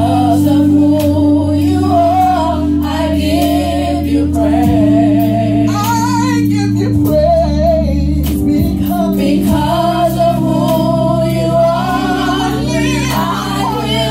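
Women's gospel group singing into microphones, with wavering, vibrato-laden voices over held accompaniment chords that change every few seconds.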